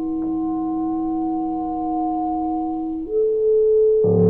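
B-flat clarinet holding one long steady note, then stepping up to a higher note about three seconds in, over the fading ring of piano notes.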